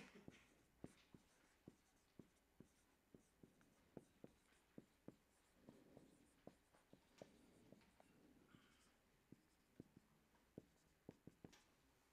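Marker writing on a whiteboard: faint, quick taps and strokes of the felt tip, about two or three a second.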